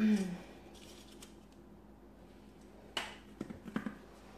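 A throat clear, then a cosmetic eye pencil being sharpened in a small handheld sharpener: one sharp scraping click about three seconds in, then a quick run of smaller clicks.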